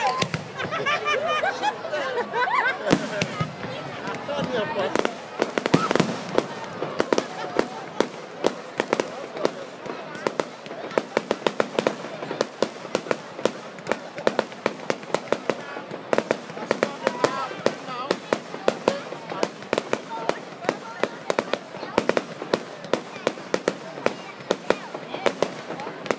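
Fireworks display: aerial shells bursting with a steady run of sharp crackling pops, several a second, thickest from about eight seconds in. Voices are heard in the first few seconds.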